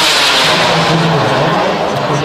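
Kerosene turbine of an RC Viper model jet flying overhead: a loud, steady jet rush whose tone slowly sweeps as the jet passes.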